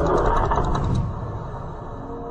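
A low rumbling noise that starts suddenly out of silence and slowly dies away, a sound effect in the music video's outro rather than part of the song's beat.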